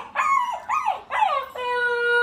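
Husky puppy howling: four short howls that fall in pitch, then one long howl held at a steady pitch from about one and a half seconds in.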